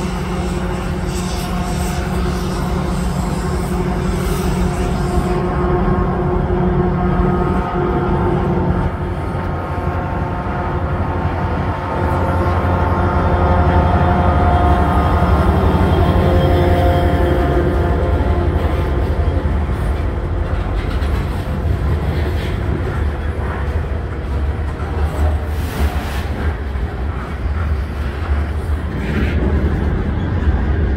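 Canadian Pacific diesel freight locomotive running as it approaches and passes close by, a steady low rumble with held engine tones that is loudest about halfway through, as the locomotive goes by below, followed by the tank cars rolling on the rails.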